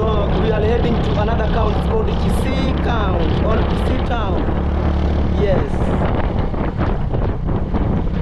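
Motorcycle engine running steadily as the bike rides along, with wind buffeting the microphone.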